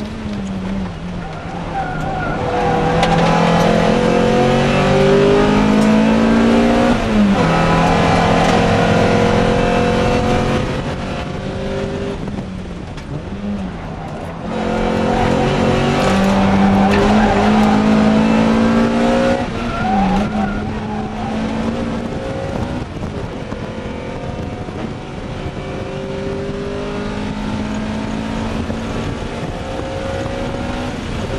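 1998 Honda Prelude Type SH's four-cylinder VTEC engine pulling hard, heard from inside the cabin. Its pitch climbs through each gear and drops sharply at the upshifts, several times over, with quieter, lower stretches where the driver lifts off.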